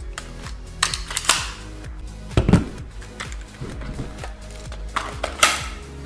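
Background music under a series of sharp plastic knocks and clacks as solid blue training guns are handled: a dummy pistol, then a replica carbine lifted and swung into position. The loudest knocks come about halfway through and near the end.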